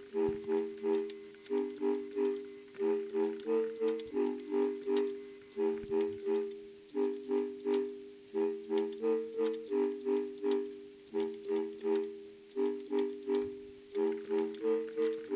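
A keyboard played by hand: a short figure of chords in the low-middle register repeats over and over, about three strikes a second with a brief pause between phrases, each chord dying away after it is struck.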